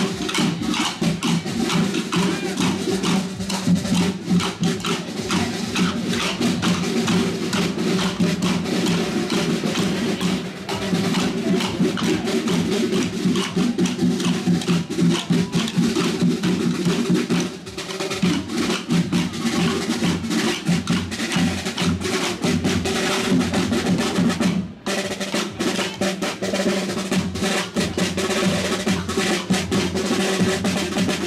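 A band of rope-tensioned side drums playing a rapid march rhythm with rolls, and wooden castanets clicking in time. The music drops away briefly a few times before picking up again.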